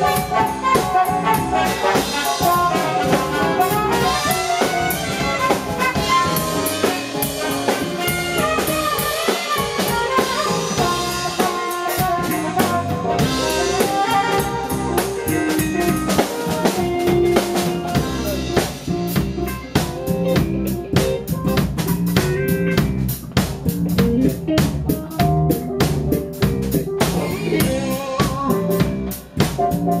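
A small band playing an instrumental jazz jam: drum kit, electric guitars and keyboard, with a saxophone carrying melodic lines. The drums become more prominent in the last third.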